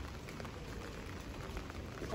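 Steady rain falling: an even hiss with a low rumble beneath.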